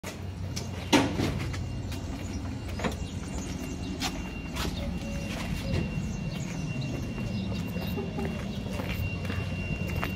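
Knocks and scrapes from a cardboard animal transport box being handled, with one sharp knock about a second in and lighter knocks scattered after it, over a steady low hum.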